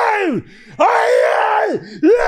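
A man's wordless, strained groan, held on one high pitch and dropping off at the end, made twice about half a second apart.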